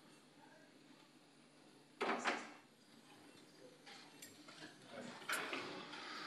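Low room hum with one short scrape or knock about two seconds in, then a few faint clicks: handling noise.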